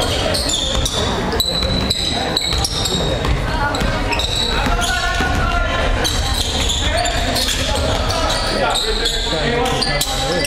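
Basketball bouncing on a hardwood gym court during play, with repeated sharp bounces, under spectators' voices echoing in a large gym.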